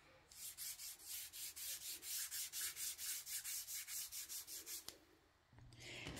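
Foam sponge dauber rubbing paint onto a craft foam sheet in quick, even strokes, about five a second, stopping about a second before the end.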